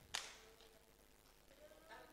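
Near silence: a pause in a man's speech into a microphone, with one short sharp hiss just after the start and a faint voice near the end.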